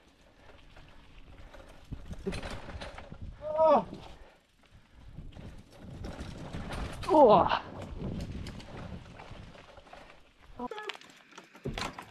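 Mountain bikes rolling fast over a dirt trail, with uneven tyre noise and the rattle and knock of the bikes over rough ground. A rider gives a short falling whoop about three and a half seconds in and a louder, longer one about seven seconds in.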